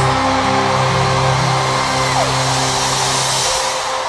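A live band holds long sustained chords at the close of a song; they die away about three and a half seconds in, over a steady high hiss.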